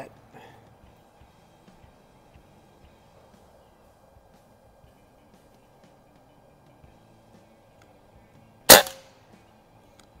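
A single shot from a .22 Beeman QB Chief PCP air rifle near the end: one sharp crack with a short ring-off after several quiet seconds.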